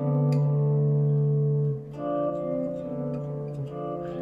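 Clean electric guitar playing two-note shapes of a two-voice line. One pair of notes rings for nearly two seconds, then a new pair is plucked about halfway through and left to ring.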